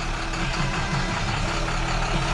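The diesel engine of a 2011 International 4300 truck idling steadily, heard from inside the cab.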